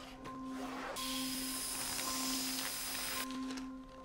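Film soundtrack: a sustained low musical drone of held tones, joined about a second in by a loud hiss that lasts about two seconds and cuts off suddenly.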